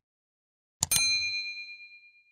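Notification-bell sound effect of a subscribe animation: a single sharp ding about a second in, ringing on in two clear tones and fading out over about a second.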